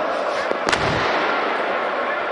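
Dense football-stadium crowd noise from packed stands, with a single loud firecracker bang going off just under a second in.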